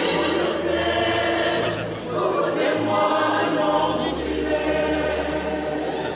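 Church choir singing a gospel song, several voices holding sustained notes together.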